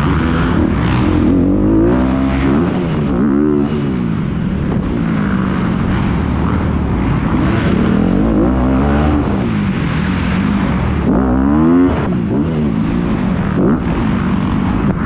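Dirt bike engine heard from the rider's helmet while racing an arenacross track, revving up and dropping back over and over through the corners and jumps, with one steep climb in pitch about three-quarters of the way through.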